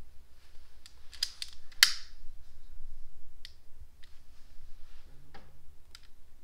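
Long-nosed utility lighter being triggered to light rosemary garnishes: a quick run of sharp clicks about a second in, the loudest near the end of the run, then a few single clicks spaced out.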